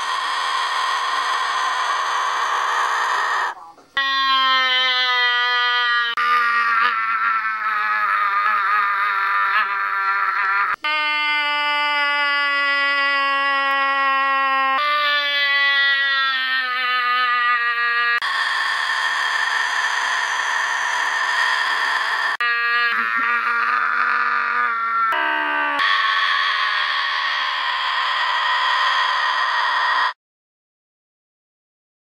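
A yellow-headed Amazon parrot's long, loud screeching calls alternate with long drawn-out 'wassuuup' yells from a person, traded back and forth without a break. The pitched yells take over about four seconds in and give way to screeching again past the middle and near the end.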